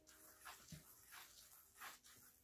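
Faint, repeated swishes of a small stick and hand sweeping through fine sand on a plate, a few strokes a second, with a soft thump under a second in.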